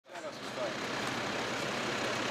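Low voices of men greeting one another over a steady, even rushing background noise.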